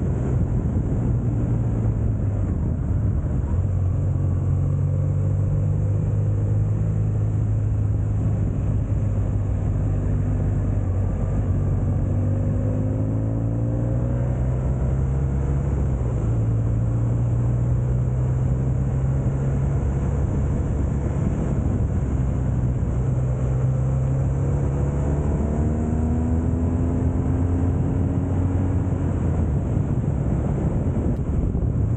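BMW R1200GS Rallye's boxer twin engine running steadily at road speed under a constant rush of wind and road noise. Its note shifts in pitch with the throttle, climbing a couple of times as it pulls.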